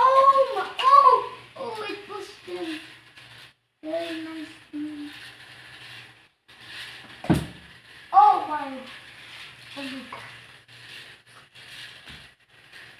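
A child's voice making wordless, high-pitched exclamations and a held hum, ending in a couple of "oh"s, with one sharp knock about seven seconds in.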